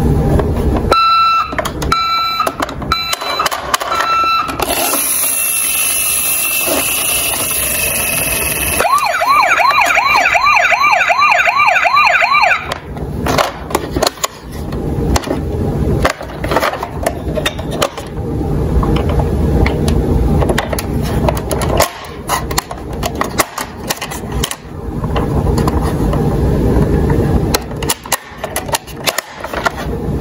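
A toy ambulance's built-in sound unit plays a few short beeps, then other electronic sound for a few seconds, then a fast warbling siren for about three seconds. After that come clicks and knocks of the plastic toy being handled and its door opened.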